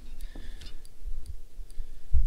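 Spinning reel being cranked on a slow lure retrieve, giving light, irregular ticking a few times a second over a low rumble.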